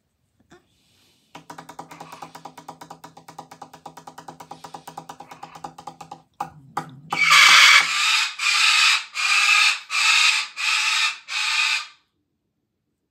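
A white cockatoo screeching six times in a row, loud and harsh, each screech under a second long. The screeches start a little past halfway. Before them, for about five seconds, a rapid low pulsing drone, about seven pulses a second.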